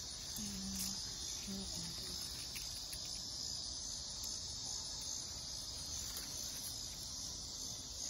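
Crickets calling in a steady, unbroken high-pitched chorus.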